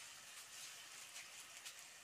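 Minced meat (keema) frying faintly in oil in a pot on a gas burner: a soft, steady hiss with a few scattered small crackles.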